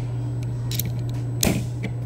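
Metal parts of a multi-bit screwdriver clicking as its nut-driver shaft is handled and slotted back into the tool, with a sharper knock about one and a half seconds in. A steady low hum runs underneath.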